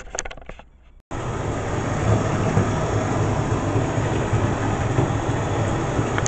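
Water running from a tap into a bathtub, a steady rushing that starts abruptly about a second in.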